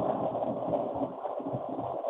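Steady rushing noise with an uneven low rumble, coming through a participant's open microphone on a video call and sounding muffled and thin.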